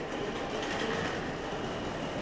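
Train station concourse ambience: a steady rumbling noise with faint distant voices and footsteps on the tiled floor.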